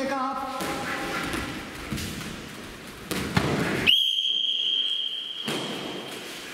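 A man's short shout at the start, a thud of a blow landing a little after three seconds, then a high, steady whistle-like signal tone that starts sharply about four seconds in and holds for about two and a half seconds.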